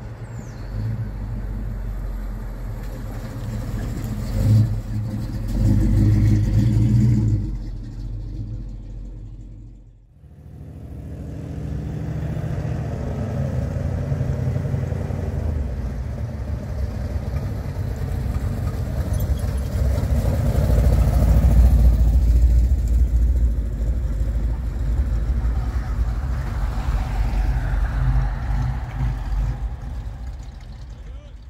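Car engines running as vehicles move slowly past: a low rumble that swells over the first several seconds and fades, then, after a brief drop, a second stretch of engine rumble that is loudest about two-thirds of the way in.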